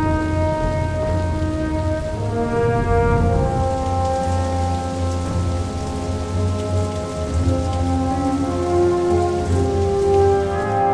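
Heavy rain falling steadily, with slow sustained chords of an orchestral film score over it.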